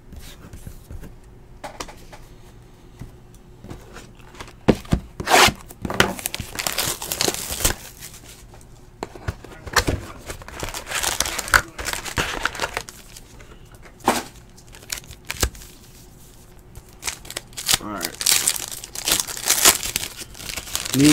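Foil wrappers of 2017-18 Panini Status basketball card packs crinkling and tearing as they are handled and ripped open by hand. The sound comes in several irregular bursts of rustling, starting about four or five seconds in.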